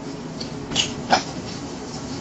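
Chewing soft bread with the mouth closed: two short, wet mouth smacks about a second in, the second louder, over a steady low hum.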